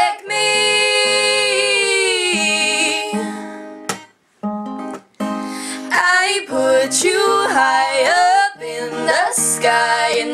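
Two women singing together over a strummed acoustic guitar: a long held note with vibrato for about three seconds, a brief break a little after four seconds in, then more sung phrases.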